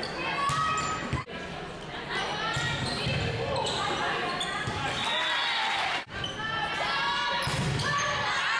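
Live volleyball rally in an echoing gym: girls' voices calling and shouting over the play, with the thud of the ball being struck and passed. The sound drops out briefly twice, about a second in and about six seconds in, where clips are cut together.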